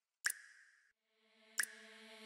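Future bass synth holding one note, cut off just before the middle and swelling back in, with a sharp percussive hit twice, about 1.35 s apart (every two beats at 90 BPM).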